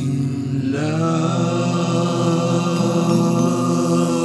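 Music: a chanted drone of long-held vocal tones, with the held pitch shifting to a new note about a second in.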